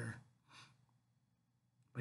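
The end of a man's sentence, then a short, soft breath out about half a second in, followed by near silence.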